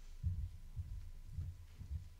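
Faint low thuds of footsteps crossing the carpeted platform, about two a second.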